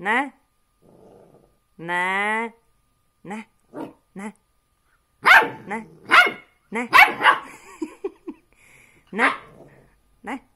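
A puppy vocalizing in a rapid, talk-like back-and-forth of barks, yowls and yips. There is a long drawn-out howling call about two seconds in, and a flurry of loud barks and yelps from about five to seven and a half seconds.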